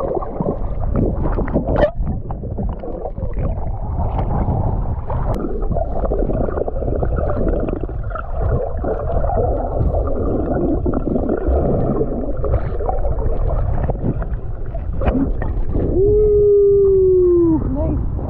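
Underwater sound picked up by a submerged action camera: a dense, muffled rush of water and bubbles with scattered clicks as swimmers move past it. Near the end a person's voice, muffled underwater, holds one long, slightly falling note for about a second and a half.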